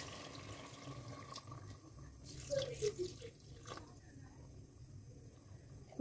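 Faint sound of water being poured into a clay pot of fried chicken masala, adding the water for the broth, with a few light clicks around the middle.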